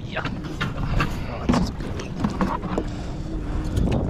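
Scattered knocks and clatter of a plastic tub being handled, with live blue crabs inside, over a low rumble and a few brief muttered voices.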